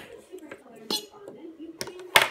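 Large plastic Duplo blocks clacking against each other and the wooden tabletop: two sharp knocks, about a second in and near the end.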